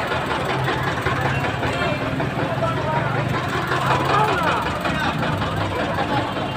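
Indistinct chatter of several people's voices over a steady low engine hum, like idling traffic.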